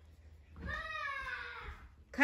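A cat meowing once: a single drawn-out meow of a bit over a second, sliding slightly down in pitch.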